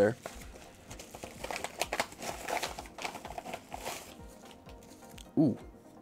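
Paper rustling and crinkling at an irregular pace as a manila envelope is handled and opened and a stack of paper stickers is slid out of it.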